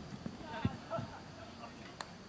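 Players calling out across a football pitch, heard at a distance, with a few short, dull low thumps in the first second.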